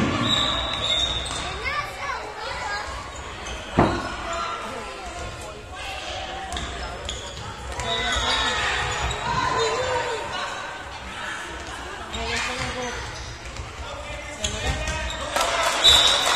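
A handball bouncing on the wooden sports-hall floor as it is dribbled and passed, with players' footsteps and voices in the hall. One sharper, louder knock comes about four seconds in.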